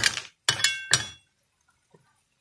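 A spatula stirring shell-on snails in a frying pan: the shells clink against the pan and the spatula in about four sharp strikes within the first second.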